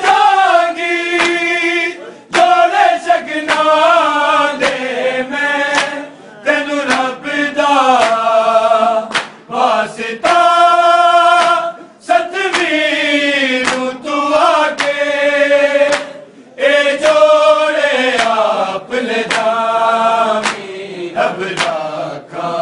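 Men's voices chanting a Punjabi noha, a Shia mourning lament, together in long wavering sung phrases of a few seconds each, broken by brief pauses for breath. Sharp slaps recur through it at a steady beat, typical of the chest-beating (matam) that accompanies a noha.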